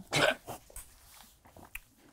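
A single short, breathy laugh, with a smaller second puff about half a second in. After it come only a few faint small clicks.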